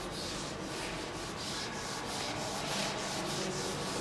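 Whiteboard eraser wiping across a whiteboard in repeated back-and-forth strokes, a dry rubbing swish a few times a second.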